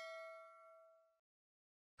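A struck metal object ringing with a ding that fades out about a second in, leaving near silence.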